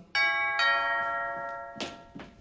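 Two-note ding-dong doorbell chime: the first note strikes just after the start and the second about half a second later, both ringing out and fading slowly. A short sharp knock sounds near the end.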